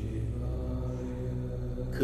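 Background music: a steady drone of several held low tones, with no beat or change.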